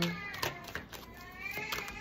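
Deck of tarot cards shuffled by hand, the cards slipping and snapping against each other in a run of light clicks. Near the end a high, drawn-out call rises and fades in the background.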